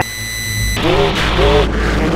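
Electronic glitch sound effect: a steady high-pitched tone over a low rumble that breaks off under a second in into a loud, noisy distorted wash with warbling sweeps.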